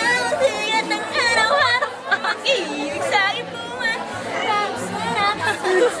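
Several voices chattering over background music.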